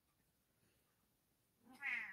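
A pet cat, just woken, gives one short meow near the end, after near silence.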